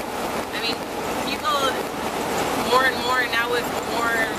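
A steady rushing noise with several short, indistinct voices over it, most of them around three seconds in.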